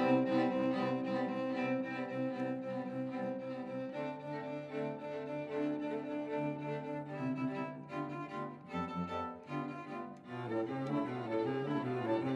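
A string quartet of violins and cello plays sustained bowed chords in contemporary chamber music. The harmony shifts about four seconds in and again around eight seconds, then breaks into shorter moving notes near the end.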